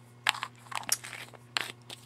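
Small plastic jar of glitter glass handled and its screw lid twisted on: a few short plastic scrapes and clicks, in three or four separate bursts.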